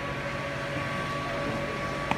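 Steady outdoor background rumble with a faint, steady high hum and no distinct events.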